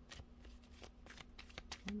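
A deck of tarot cards being shuffled by hand: a run of quick, soft, irregular card clicks.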